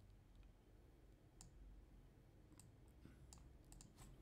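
Near silence: faint room tone with a handful of soft computer mouse clicks, most of them in the second half.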